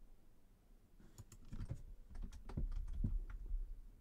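Typing on a computer keyboard: a quick, irregular run of key clicks starting about a second in.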